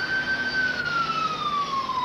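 Ambulance siren sounding one slow wail: the pitch, having just risen, holds at its peak and then falls slowly.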